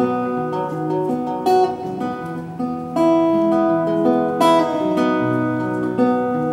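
Acoustic guitar playing an instrumental passage of ringing chords, with no singing; the chords change every second or so, with firmer strums about three seconds in and again a second and a half later.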